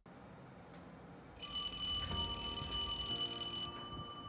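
A mobile phone ringing: a steady, high electronic ring that starts about a second and a half in.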